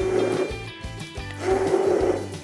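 Stick blender puréeing sliced bananas in a jug, running in two bursts: the first ends about half a second in, the second starts past the middle. Background music plays throughout.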